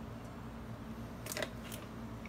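Quiet handling of a plastic squeeze bottle of ranch dressing as it is squeezed over a wrap and lifted away, with one short rustling noise about a second and a half in, over a low steady hum.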